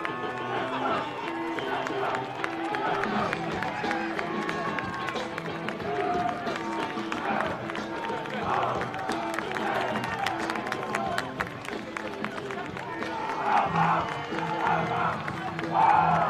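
Team walk-out music played over a sports ground's public-address system, with a crowd cheering and clapping.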